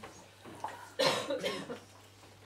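A person coughs briefly close to the microphone, in a few quick bursts about a second in.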